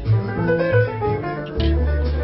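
Live jazz from a piano trio: grand piano notes and chords over a plucked upright double bass walking in the low register, with the drum kit played lightly.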